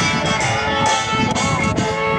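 Live acoustic string band playing a bluegrass or old-time tune, with the guitar most prominent, heard steadily throughout.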